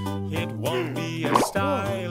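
Upbeat children's song with a sung melody over backing music, and a cartoon cork-pop sound effect with a quick upward glide about a second and a half in.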